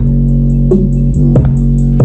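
A producer's instrumental beat playing back, cutting in suddenly at the start. It has a heavy, sustained bass under evenly spaced hits about every two-thirds of a second.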